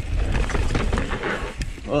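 Mountain bike rolling fast down a dry dirt singletrack: a heavy, constant low rumble of wind and tyre noise on the helmet-camera microphone, with scattered clicks and rattles from the bike over the rough trail.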